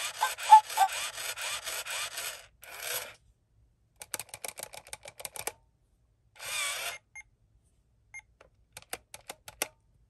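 Sega Poo-Chi robot dog toy playing a tinny electronic tune with a quick pulsing beat through its small speaker; the tune stops about two and a half seconds in. After it come short electronic chirps from the toy, about three seconds in and again near the middle. Between and after them are two runs of rapid mechanical clicking from its motor and gears as it moves.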